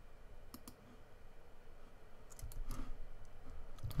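A few faint, sharp clicks from operating a computer: a pair about half a second in, then several scattered clicks in the second half.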